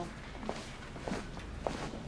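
A few footsteps on a hard floor, spaced about half a second apart, over a faint room background.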